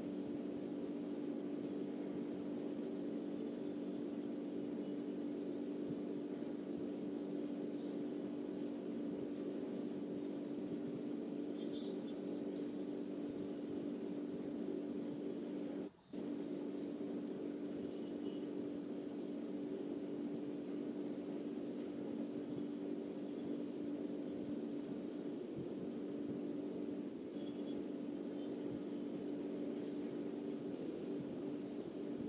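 Steady background hum with a constant low tone, picked up by an open microphone on a video call; the sound cuts out briefly about sixteen seconds in.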